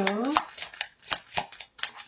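A deck of oracle cards being shuffled by hand: an uneven run of crisp card clicks, about five a second.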